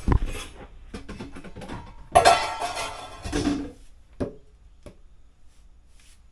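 Dishes and plastic basins knocking and clattering as they are moved about. There is a thump at the start, a longer loud clatter from about two seconds in, and two sharp knocks near the end.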